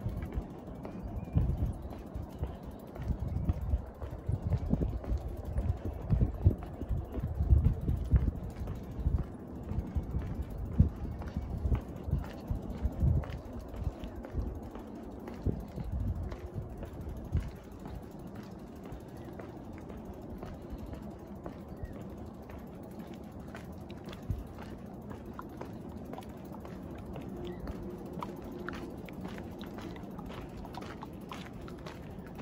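Bicycle rolling across a bridge deck, with fine ticking from the freewheel. Heavy, irregular low thumps and rumbles fill roughly the first half, then the rolling noise settles and runs steadier.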